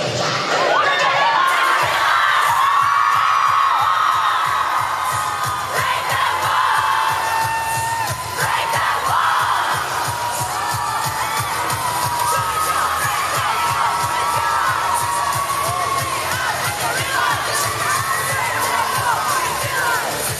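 Crowd of fans screaming and cheering, many high-pitched screams one over another, over a K-pop dance track with a steady bass beat played through PA speakers.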